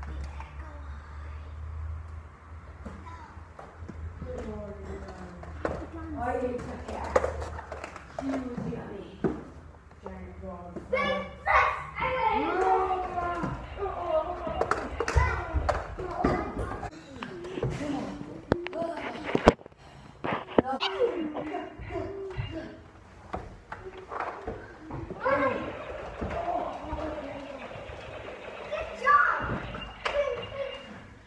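Children's voices and play noises, with occasional knocks and thumps.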